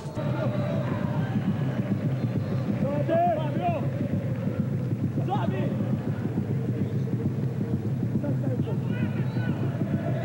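Stadium crowd at a football match, heard through the TV broadcast: a steady din of many voices, with a few single shouts standing out about three and five seconds in.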